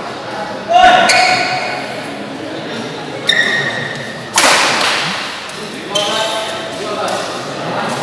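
Badminton shoes squeaking sharply on the court floor in an echoing sports hall, over voices from players and spectators, with a louder noisy burst about four and a half seconds in.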